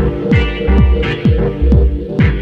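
Dub techno track: a kick drum beats steadily about twice a second, each hit dropping quickly in pitch, under a held synth chord and faint ticking hi-hats.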